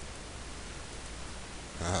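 Steady hiss with a low hum underneath: the recording's background noise while nothing else sounds. A man's short "ah" comes in near the end.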